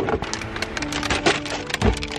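Groceries being loaded into a car: a quick run of knocks, clatters and rattles as packages are set down, with a heavier thump near the end, over background music.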